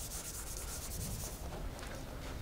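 Chalk scratching on a blackboard in writing, a faint run of quick scratchy strokes that stops after about a second and a half.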